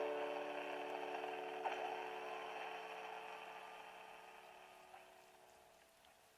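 A piano chord ringing on and slowly dying away to almost nothing, over a faint steady hiss.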